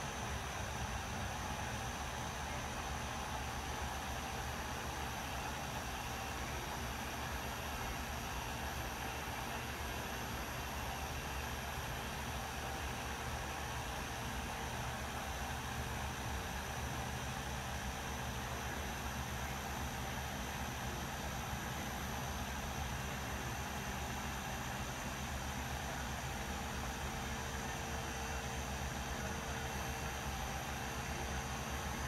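Flex XFE 7-12 80 three-inch polisher running at an even speed with an orange foam cutting pad, working coarse cutting compound into clear coat: a steady motor whir with an even hiss that does not change.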